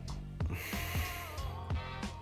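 Background music with a steady beat, and about half a second in a hissing draw of air lasting about a second as bourbon is sipped from a tasting glass.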